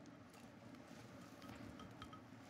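Near silence: room tone, with a few faint ticks in the second half.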